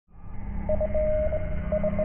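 Electronic intro sting for a news channel logo: a low drone fades in quickly under a mid-pitched tone that beeps in short pulses, with one beep held for about a third of a second.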